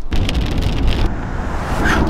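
Wind rumbling on the microphone, a dense low buffeting noise that turns hissier about halfway through.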